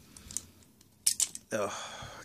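A plastic Heat Hawk weapon on an action figure is pulled out of a tight square peg and comes free with a short, sharp plastic click about a second in. A few faint plastic ticks come before it.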